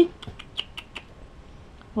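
A baby guinea pig under a cardboard hidey making a quick run of small clicks and rustles, about eight in the first second.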